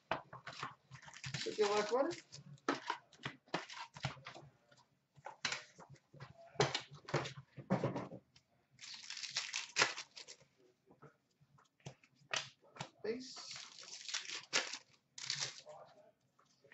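Handling sounds of a trading-card hobby box being unpacked: short taps and rustles as the cardboard box is opened and the packs are set down on a glass counter, then longer crinkling and tearing of a pack wrapper near the end.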